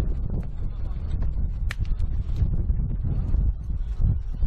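Wind buffeting the microphone: a steady low rumble, with a few faint scattered clicks over it.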